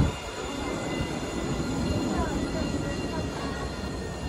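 Alstom Citadis tram rolling past on its rails: a steady low rumble with faint steady high-pitched tones above it.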